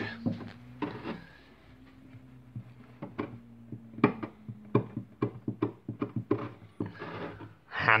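Hand-pushed wood chisel carving the notches of a piano's bass bridge, a run of short, irregular clicks and snaps as chips of wood are cut away, several a second, over a faint low hum.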